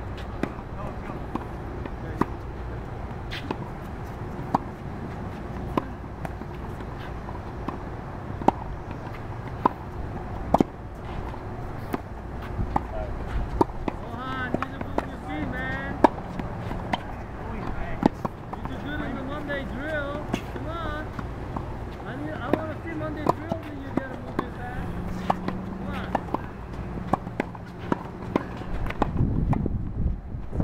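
Tennis rackets striking balls in a quick drill: sharp pops about once a second, over a steady low outdoor rumble, with voices faintly heard in the middle.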